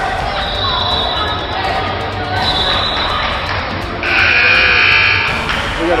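Basketball gym during a stoppage in play: crowd chatter echoing in the hall and a basketball bouncing on the hardwood. About four seconds in, a loud steady tone sounds for about a second and a half.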